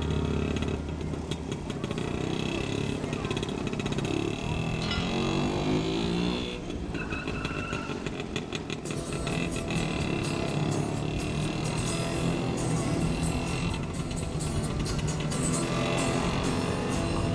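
Car engine running and revving, rising in pitch as it accelerates about five seconds in, with music and voices mixed in.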